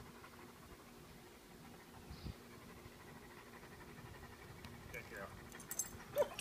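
Near quiet: faint outdoor background with a low steady hum.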